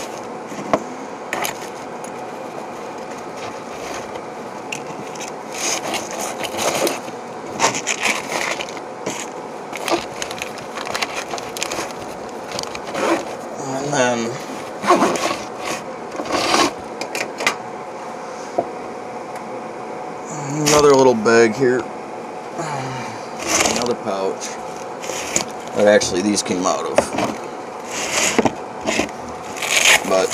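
Small items being handled and packed on a wooden workbench: scraping, rubbing and a string of short knocks as metal tins are set down and the kit is pushed into a nylon pouch.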